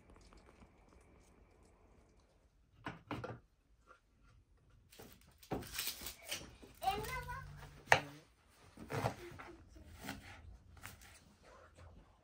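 Brief bits of voice and scattered knocks and clatter over low room noise, with one sharp click about eight seconds in.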